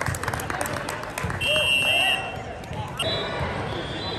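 Volleyballs bouncing on a hardwood gym floor, with scattered knocks and voices echoing in the large hall. About a second and a half in there is a short, steady, high whistle, typical of a referee's whistle at a court.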